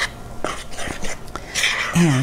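A spoon stirring flour and beer into a shaggy dough in a mixing bowl: irregular wet scraping and rubbing, with a few light clicks of the spoon against the bowl.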